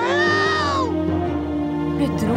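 Orchestral cartoon underscore with sustained notes, over which a short high-pitched cry from a cartoon baby dinosaur rises and falls in the first second.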